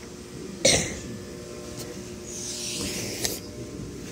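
A single short cough about half a second in, followed by a softer hiss and a click near the end, over a steady background hum.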